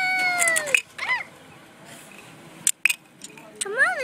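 A child's high voice making a long drawn-out, meow-like cry that rises and falls, then a shorter one. A couple of sharp clicks follow near the end.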